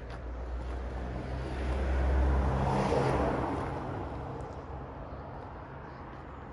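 A motor vehicle driving past, its engine and tyre noise growing louder to a peak about two to three seconds in, then fading away.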